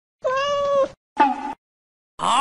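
Domestic cat meowing twice: one long, even meow, then a shorter one about a second in.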